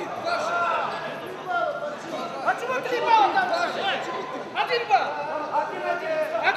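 Crowd chatter in a large sports hall: several voices talking and calling out over one another, with no single speaker standing out.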